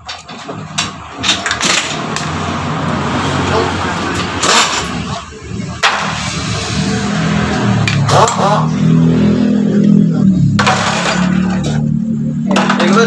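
Metal tools knocking and clinking against a motorcycle front fork assembly. About halfway through, an engine starts running steadily.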